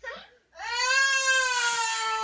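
A baby crying: a short cry at the start, then about half a second in one long wail held at a steady pitch.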